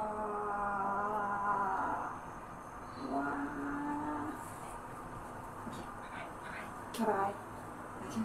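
A woman's voice humming two long, steady notes, the first for about two seconds and the second for about a second from three seconds in, with a brief spoken syllable near the end.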